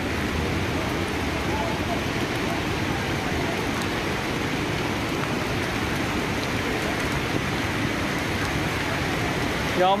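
Floodwater from an overflowing stream rushing through the streets, with rain falling: a steady, even rushing noise.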